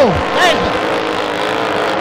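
Engines of 6-litre displacement-class racing powerboats running flat out, a steady drone with a few held tones.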